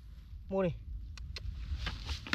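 Two light, sharp clicks of duck eggshells knocking together as eggs are set into a plastic bucket of eggs, about a fifth of a second apart.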